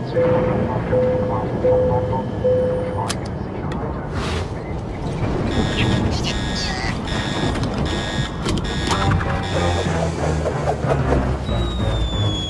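Cartoon soundtrack: music mixed with comic sound effects and a character's voice. Four short, even tones sound in the first few seconds, a rapid high beeping repeats in the middle, and a high whistle glides downward near the end.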